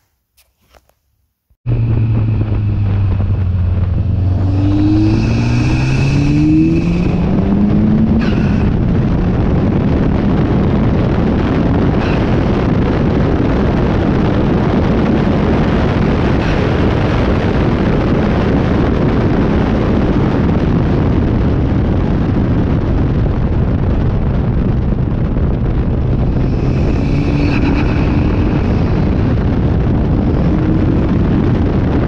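Ariel Atom 4's turbocharged 2.0-litre Honda four-cylinder engine driving on a race track, heard onboard from the open cockpit under heavy wind rush. It starts abruptly about two seconds in, the engine note rises in pitch over the next few seconds under acceleration, then holds fairly steady at speed.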